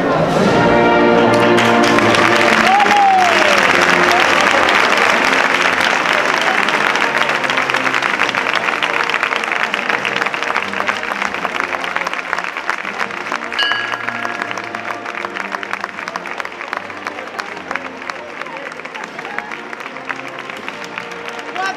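A crowd applauding while a brass and wind band plays a held processional chord. The applause swells about two seconds in, then slowly thins toward the end.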